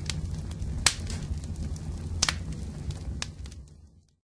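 Low rumbling drone with a few sharp, scattered crackling snaps over it, fading out at the end.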